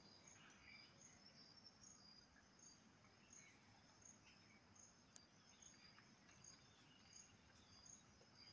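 Near silence with a cricket chirping faintly and regularly in the background, a little over two chirps a second.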